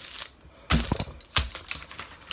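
Paper cupcake liner being pressed flat by hand on a tabletop: light paper crinkling, then two sharp thumps a little under a second apart.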